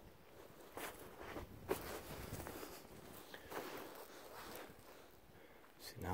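Footsteps in snow, a series of irregular steps through the undergrowth.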